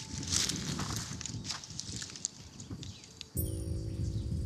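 Rustling and crackling of dry brush and twigs as someone shifts through the undergrowth, over a low rumble; a little over three seconds in, a sustained music chord comes in suddenly.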